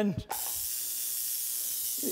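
Custom-made violet wand, Tesla coils tuned for maximum voltage, switched on: its high-frequency electrical discharge gives a steady, high hiss that starts suddenly about a third of a second in.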